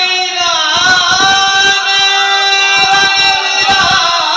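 A man singing a naat, the devotional Urdu hymn, into a microphone. He holds long, wavering notes, one of them sustained from about a second in until near the end.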